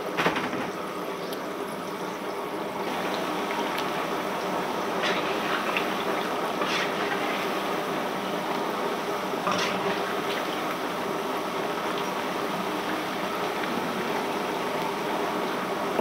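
Pakoras deep-frying in hot oil in an iron karahi: a steady sizzling and bubbling, with a few brief scrapes as a slotted spoon stirs them.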